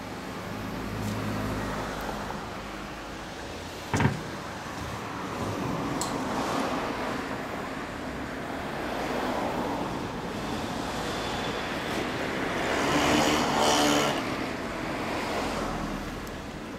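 Motor vehicles passing, the sound rising and fading several times, with one sharp knock about four seconds in.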